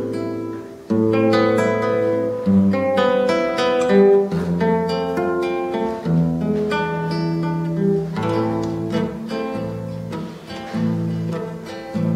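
Solo acoustic guitar playing an instrumental introduction to a song: a picked melody of ringing notes over sustained bass notes.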